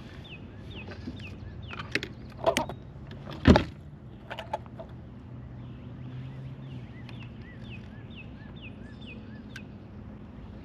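A few sharp knocks and clicks from handling fishing tackle in a kayak, the loudest about three and a half seconds in. Behind them a bird calls over and over with short falling notes, about two a second, over a steady low hum of distant road traffic.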